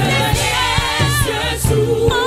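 Gospel choir singing a French worship song live, a lead voice over backing singers, with band accompaniment and a steady beat.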